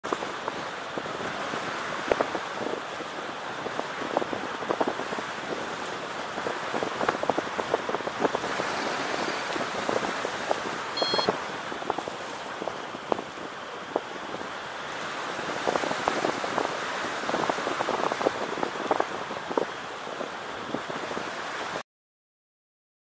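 Airflow in paragliding flight buffeting an action camera's microphone: a steady rushing hiss with frequent sharp crackles and knocks from gusts hitting the mic. It cuts off suddenly just before the end.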